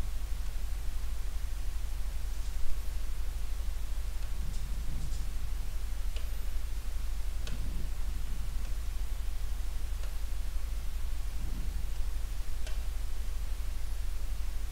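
Steady low electrical hum with hiss, and faint scattered taps of a stylus on an interactive touchscreen board as small circles are drawn, about half a dozen over the stretch.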